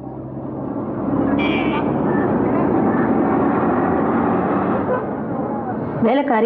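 Busy city street traffic: buses and other motor vehicles running, fading in over the first second and then holding steady, with a short high-pitched horn toot about a second and a half in.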